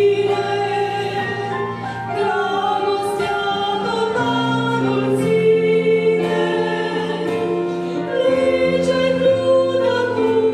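Two women singing a Romanian hymn as a duet into microphones, accompanied by sustained chords on an electronic keyboard that change every second or two.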